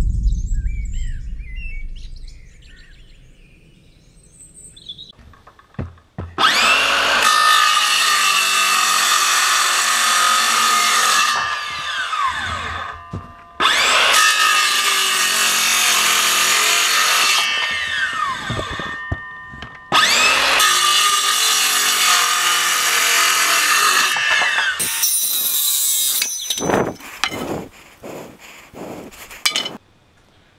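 A deep boom fades away over the first few seconds. Then a Makita cordless circular saw cuts timber in three long passes of several seconds each, followed near the end by a run of short sharp knocks.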